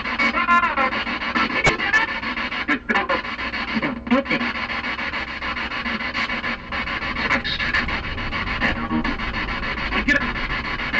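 Spirit box sweeping through radio frequencies: steady hissing static broken by brief snatches of radio sound, voice and music fragments that flash past, with a few short dropouts.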